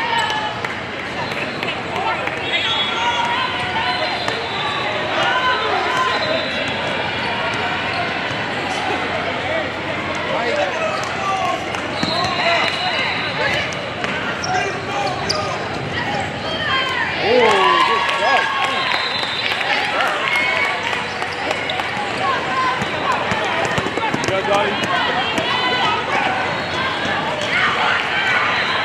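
Basketball game in a large hall: a ball bouncing on the court as it is dribbled, over a steady chatter of many voices from players and spectators.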